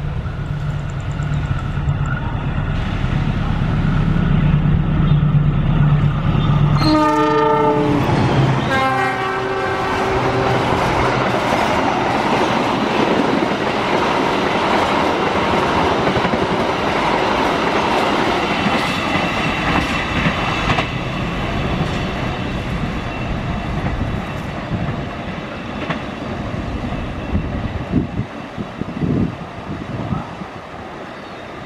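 Diesel-electric locomotive hauling a passenger train past: the engine drone grows louder as it approaches, then two horn blasts about seven seconds in. After that the coaches roll past on the rails in a long rumble that fades near the end.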